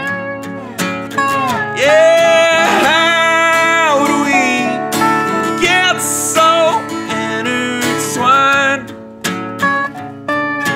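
Acoustic guitar strumming under a lap steel guitar playing a slide lead. The lap steel's notes glide up and down in pitch and are held long through the middle, and the strumming comes forward again near the end.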